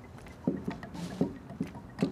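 Footsteps on pavement: a few short thuds, about half a second apart.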